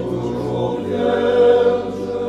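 Men's voices chanting together in a choir, a cappella sacred chant, over a low held note that steps down slightly about a second in.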